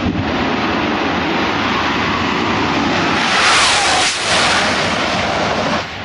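Two jet-powered drag racing cars run side by side down the strip in a continuous loud roar. The roar is loudest, with a falling pitch, about three and a half seconds in as they pass.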